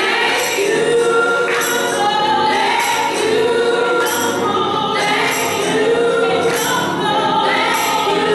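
Small gospel choir singing together into microphones, the voices holding long notes that slide between pitches.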